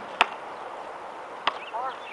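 A basketball bouncing on an outdoor court: two sharp bounces about a second and a quarter apart, the first the louder.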